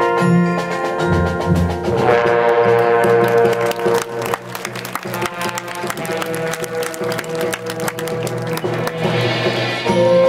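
High school marching band playing its field show: held brass chords over sharp percussion strikes. About four seconds in the music drops in volume, and the percussion keeps going under softer sustained tones.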